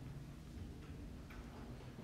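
Faint, irregular ticks of a stylus on a tablet as a word is handwritten, over a low steady hum.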